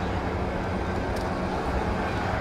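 Steady low rumble of city street traffic, with an even engine-like hum and no distinct events.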